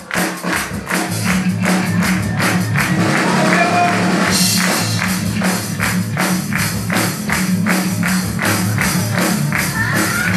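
A live band playing an instrumental passage: electric guitars over a steady percussion beat of about two to three strokes a second. Brighter, jingling percussion joins about four seconds in.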